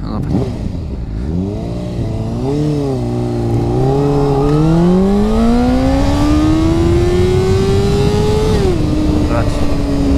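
Honda CBR600RR's inline-four engine, restricted to 48 PS, accelerating hard in first gear from a standing start. For the first few seconds the revs wobble up and down in a poor launch. They then climb smoothly for about four seconds before the throttle is closed just before nine seconds, and the engine settles to a steady lower note.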